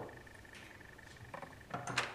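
A quiet pause after knocking on a door, then a few faint clicks and a short rattle near the end: the door's latch and handle being worked as it is opened from inside.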